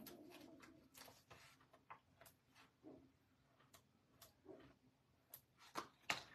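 Near silence with a few faint, scattered clicks and light rustles: hands handling a plastic strip of foam adhesive dimensionals and small punched paper flowers.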